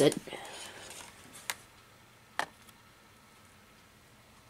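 Faint handling noise, then two short sharp clicks about a second apart as a plastic power-supply brick and its cord are set on a plastic kitchen scale.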